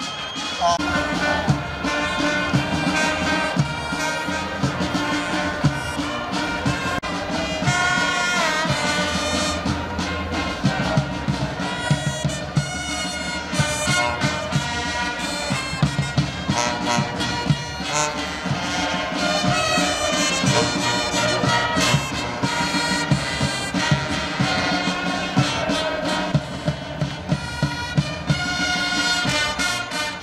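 Brass band music with a steady beat, trumpets and trombones playing sustained melody lines.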